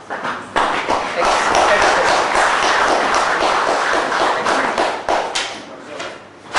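Audience applauding, starting suddenly about half a second in and dying away near the end.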